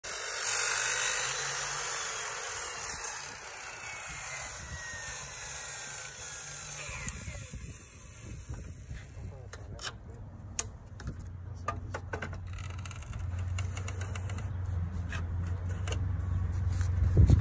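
Ryobi sliding compound miter saw finishing a cut through a cement-coated EPS foam molding, its motor then spinning down with a falling whine over about six seconds. After that, scattered clicks and knocks as foam pieces are handled on the saw table.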